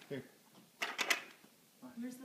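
A short cluster of plastic clicks and clatter, about a second in, from a toy upright vacuum cleaner being handled.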